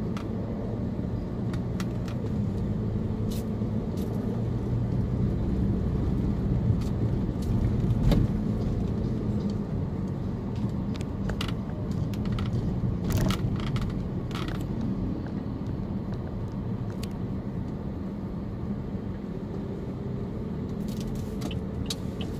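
Car engine and road noise heard from inside the cabin while driving slowly in city traffic: a steady low hum with scattered small clicks and rattles, the engine note rising as the car speeds up near the end.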